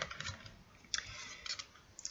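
Tarot and angel cards being handled: a few faint short snaps and papery rustles as cards are slid across the table and picked up, with a longer rustle about halfway through.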